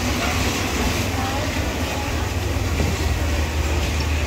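Busy outdoor market ambience: a steady low rumble with indistinct voices in the background.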